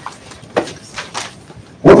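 A pause in a man's speech, with a few faint short rustles. His voice comes back near the end.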